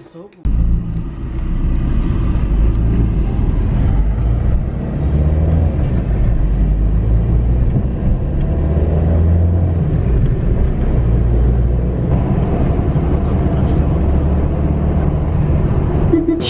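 Car driving along city streets, heard from inside the cabin: steady engine and road noise. It cuts in suddenly about half a second in.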